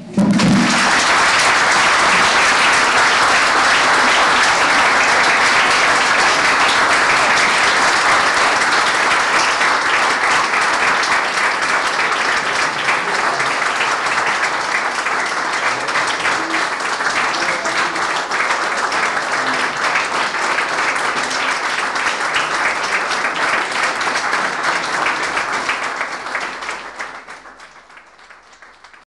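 Audience applauding: a large room of people clapping, loud and steady for about 25 seconds, then dying away near the end.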